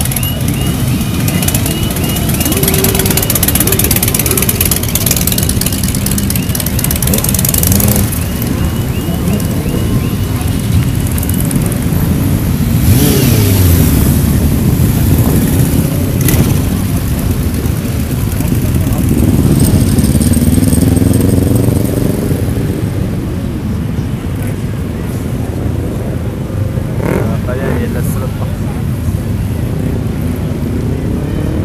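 Several motorcycle engines idling and revving, rising and falling in pitch as bikes ride off, amid crowd chatter.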